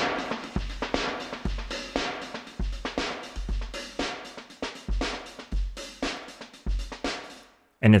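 Programmed drum-kit loop from the Addictive Drums 2 virtual instrument, kick, snare and cymbals, playing through an EQ-based multiband compressor/expander whose global amount is being turned down so the processing sounds less drastic. The loop stops shortly before the end.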